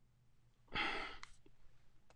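A man sighing once into a close microphone: a short audible breath out about two-thirds of a second in, lasting about half a second, followed by a small click.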